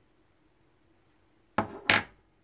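Near silence, then two quick knocks close to the microphone about a third of a second apart near the end, from makeup items being handled.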